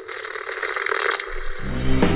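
Television static: a steady hiss with a few crackles at the start. Music with a heavy bass line comes in about a second and a half in.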